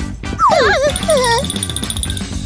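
A high, wavering, whimper-like vocal whine in short gliding calls, the first falling steeply, over background music. A thin steady high tone rings through the second half.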